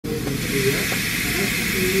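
Steady hiss of air from dental clinic equipment, with faint voices beneath it.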